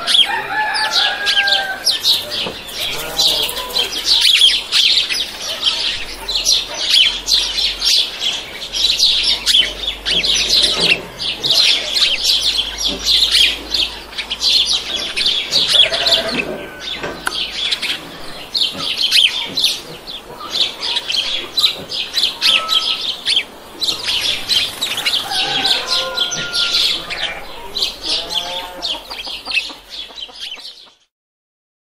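Farmyard ambience: chickens clucking now and then over a constant chatter of high-pitched chirping.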